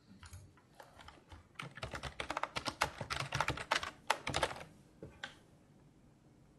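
Laptop keyboard being typed on: a few scattered keystrokes, then a fast run of typing lasting about three seconds, then a couple of last taps, as a web address is typed into a browser.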